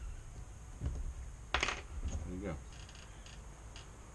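Hands handling and tightening a small 3D-printed plastic line trimming rig, with one sharp click about one and a half seconds in and a few faint ticks later.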